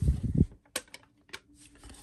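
Hard plastic PSA graded-card slabs being handled and swapped: a dull low bump in the first half second, then a few sharp plastic clicks as the cases knock together.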